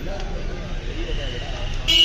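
Crowd chatter with a vehicle horn sounding: a thin steady tone joins about a second in, and a loud, short honk comes just before the end.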